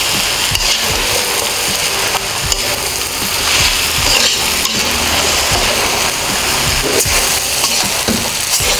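Noodles, greens and bean sprouts being stir-fried in a wok: a steady sizzle, with the spatula scraping and knocking against the pan at irregular intervals as the noodles are tossed.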